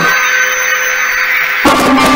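Cordless drill running at a steady speed, with a steady whine, spinning a small DC motor from a massage machine that works as a generator. About a second and a half in, a louder sound with lower tones joins.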